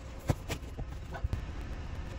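A few light plastic clicks and taps from handling a battery-powered wireless thermometer display and pressing it onto the wall panel, over a low steady hum.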